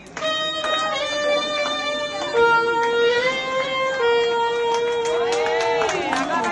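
Saxophone playing a slow melody in long, held notes.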